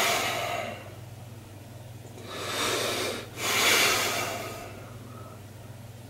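A man breathing hard while straining in a flexed bodybuilding pose: one loud breath at the start, then two more back to back in the middle.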